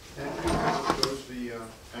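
Indistinct, low voice in a classroom, with two sharp clicks about a second in.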